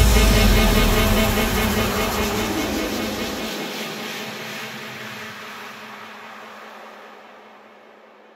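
The ending of an electronic hardstyle remix: after the last hit, a noisy wash with a held chord fades away steadily over several seconds, the bass cutting out about halfway through.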